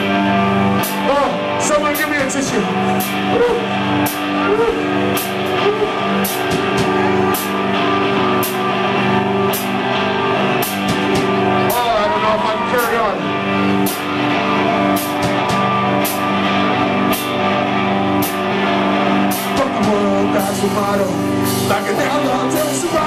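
Punk rock band playing live and loud: electric guitar chords over a steady drum-kit beat with cymbal hits, and a singing voice at times.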